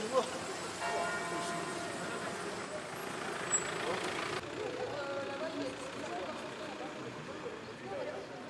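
A car drives past on the street, its noise growing until it cuts off sharply about halfway through. Scattered voices of people gathered nearby run throughout, and a bell rings with several steady tones during the first few seconds.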